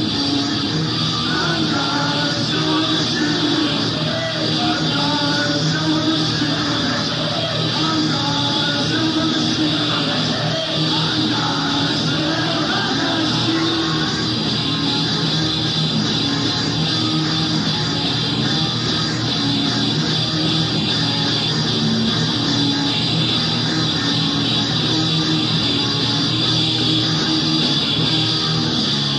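A live punk rock band playing loud, distorted electric guitar rock at a steady, driving level.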